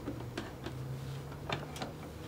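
About four light clicks and taps from a bernette London domestic sewing machine and its fabric being handled once the stitching has stopped, over a faint steady low hum.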